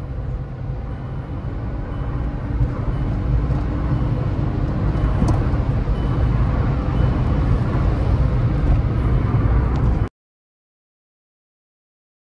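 Cabin noise of a Volkswagen sedan at highway speed: a steady low rumble of engine, tyres and wind that grows slightly louder over the first few seconds. About ten seconds in it cuts off abruptly to silence.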